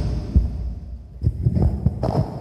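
Handling noise on a phone's microphone: a few dull low thumps and rumbles as the phone is held and jostled.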